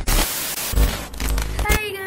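Burst of TV-style static hiss used as an edited transition effect, cutting in suddenly with a low rumble under it; a voice comes in near the end.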